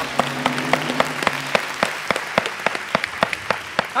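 Studio audience applauding a correct answer, with sharp individual hand claps standing out from the general clapping. The applause slowly tails off toward the end.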